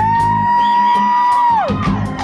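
Live rock band in an instrumental passage: over the drums and guitars, one high note slides up, holds steady for about a second and a half, then slides back down.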